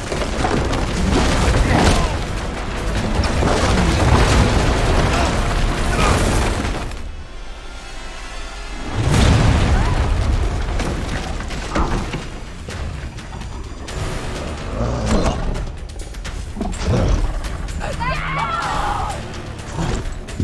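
Film fight soundtrack: score music under heavy booming impacts, smashing and splintering wood as bodies crash through a wooden barn, with vocal grunts. After a brief quieter lull, a loud crash of breaking timber comes about nine seconds in.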